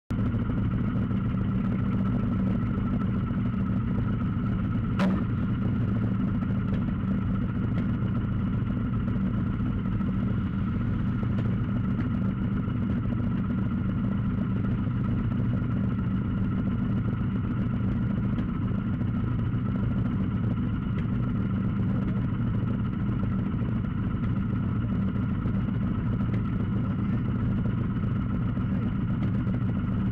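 Motorcycle engine idling steadily at an unchanging pitch. A single sharp click comes about five seconds in.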